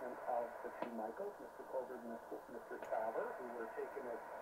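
A station announcer's voice coming from the Drake 2B receiver's loudspeaker, narrow and band-limited like AM radio, received on the broadcast band through the plug-in LF up-converter.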